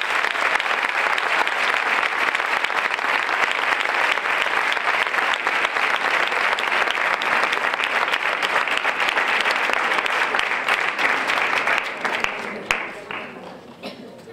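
Audience applauding steadily. The applause dies away about twelve seconds in, leaving a few last scattered claps.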